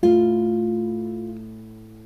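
Classical guitar: the open fifth string and the first string held at the first fret, plucked together once and left to ring, fading over about two seconds.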